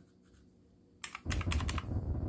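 Keys of a desk calculator with round typewriter-style keycaps being pressed: about a second of near silence, then five or so sharp clicks in quick succession.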